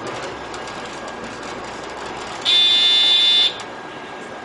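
Bus running steadily, with a single loud, high-pitched electronic beep about a second long starting midway through, from a buzzer inside the bus.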